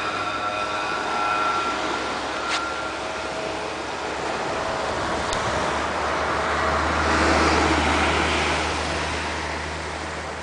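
Motor vehicle traffic on a nearby road: an engine note fades away in the first couple of seconds, then another vehicle passes, its rush swelling to a peak about seven to eight seconds in. Two brief clicks fall in between.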